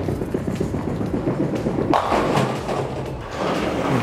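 A bowling ball rumbling down the lane, then crashing into the pins about two seconds in, with the pin clatter dying away afterwards; the shot is not a strike.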